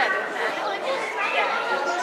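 Several people talking at once: crowd chatter of visitors, with overlapping voices throughout.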